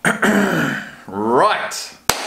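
A man clears his throat, then about a second in makes a short wordless vocal sound that rises in pitch.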